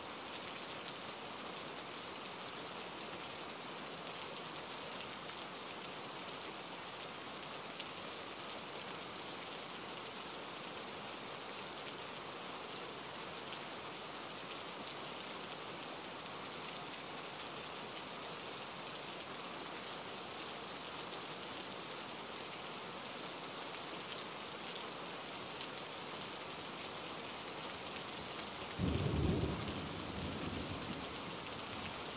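Steady, even hiss like falling rain throughout, with a short low rumble about a second before the end.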